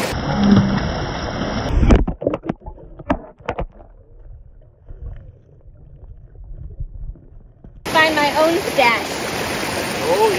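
A phone dropping into a shallow, rocky stream: a splash and a few sharp knocks about two seconds in, then about four seconds of muffled, low water sound. The clear rush of the stream and a voice return near the end.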